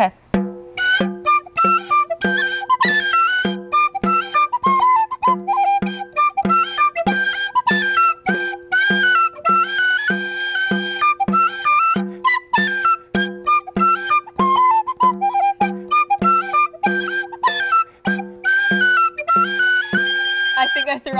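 Irish penny whistle (brass tin whistle with a green mouthpiece) playing a lively Irish tune, the melody stepping quickly from note to note. A bodhrán-style frame drum beaten with a wooden tipper keeps a steady beat under it, about one and a half strikes a second.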